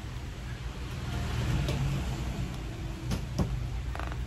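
A steady low rumble with a couple of short knocks about three seconds in, from guitars being handled.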